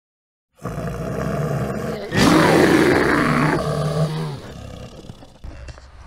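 A bear roar sound effect: a low growl, then a loud roar about two seconds in that tails off and fades by about four seconds.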